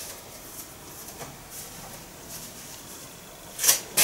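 Quiet room tone with faint rustles of a light synthetic dress being handled, then a short hiss near the end.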